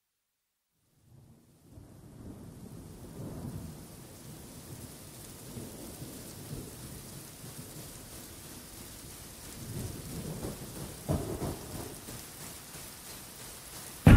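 Rain and thunderstorm sound effect: steady rain fades in about a second in, with rumbling thunder and a sharp thunderclap near the end, leading straight into a pop song's music.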